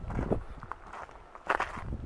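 Footsteps on gravel: a few separate steps.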